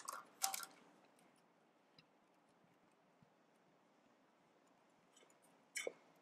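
Near silence, broken by a few brief clatters and scrapes in the first second and again just before the end: the corn mixture being scraped out of a plastic food processor bowl into a stainless steel mixing bowl with a spatula.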